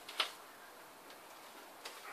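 A few sharp paper crackles and ticks, the loudest just after the start, from northern blue-tongued skinks shifting on crumpled newspaper during mating.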